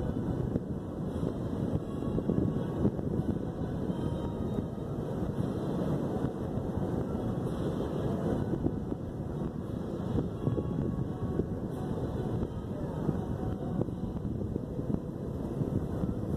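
Wind buffeting the microphone, a steady low, fluttering rush.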